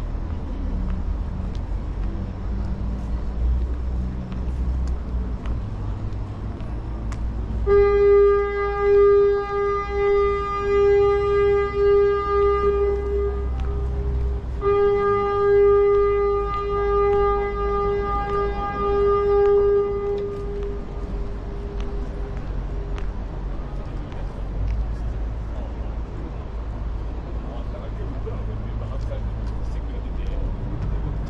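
A horn sounding two long, steady blasts of about six seconds each at one pitch, starting about eight seconds in with a short break between them, the second fading away in echo. Under it runs a low outdoor rumble.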